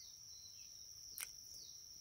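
Faint, steady, high-pitched chirring of insects, with one soft click about a second in.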